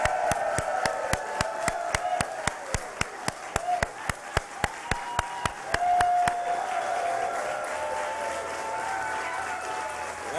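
A crowd applauding, with one pair of hands clapping close to the microphone at about three claps a second for the first six seconds, and cheering voices over the clapping.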